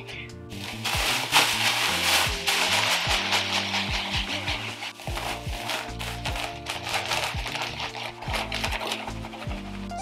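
Background music with a steady beat, over which fine grit pours from a plastic bag into a plastic storage tub with an even hiss for the first couple of seconds. Scattered light pattering follows as a second bag of mix is poured in.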